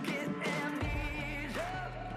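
A pop song with a lead singer over a band: the bass comes in about a second in, and the singer holds a long note through the second half.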